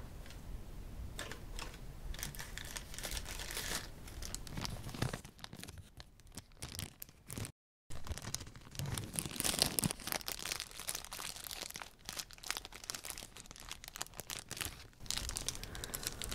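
Thin clear plastic bag crinkled and rustled between fingers, a dense run of crackles, broken by a brief dropout about halfway through.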